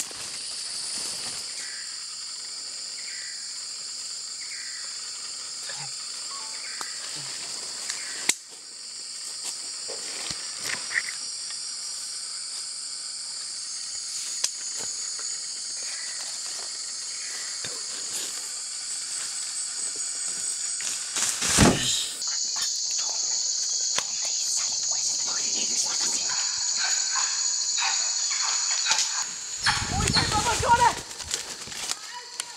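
Rainforest insect chorus: a steady, high-pitched drone of insects, with short chirps and light rustles over it. A sharp knock about two-thirds of the way through is the loudest sound.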